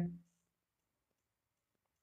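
A spoken word trails off in the first moment, then near silence with a few very faint clicks.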